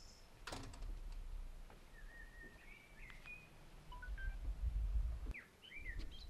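Small birds chirping in short, scattered calls with little pitch glides. A sharp click comes about half a second in, and a low rumble rises and falls twice.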